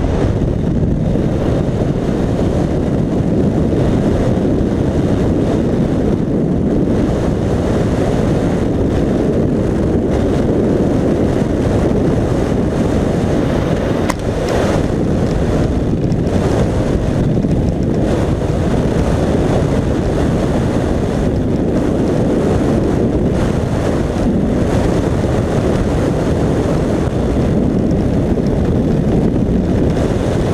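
Loud, steady rush of air from wingsuit flight, buffeting the body-mounted camera's microphone, with a brief dip about halfway through.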